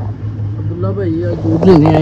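A man talking in short phrases over a steady low hum, the voice growing louder near the end.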